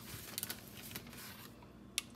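Faint handling noises of almonds being added to a bowl of yogurt: a brief crinkling rustle about half a second in, and a single sharp click near the end.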